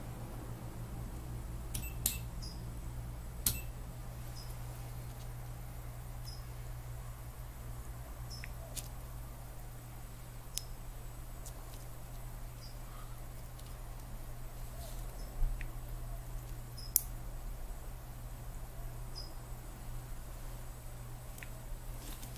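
Scattered sharp clicks, a dozen or so at irregular intervals, from test leads, cells and desk equipment being handled, over a steady low hum.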